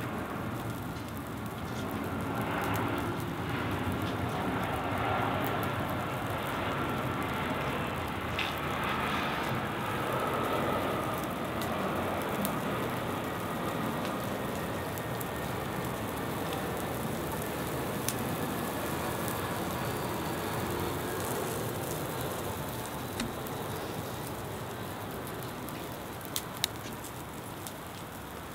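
Fire burning across a tabletop model village on cotton-wool snow: a steady crackling rush of flames, with a few sharp pops now and then.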